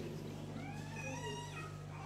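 A faint, high-pitched cry that rises and falls in pitch, lasting about a second, over a steady low hum.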